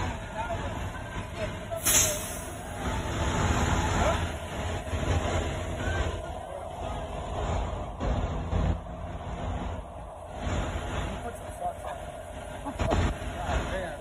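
Low, steady rumble of a semi-truck's diesel engine running, with indistinct voices of people nearby. A single sharp click about two seconds in.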